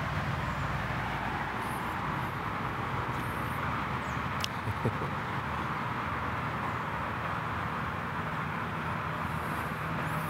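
Steady outdoor background noise, an even hiss with a low rumble beneath it, with one brief click about four and a half seconds in.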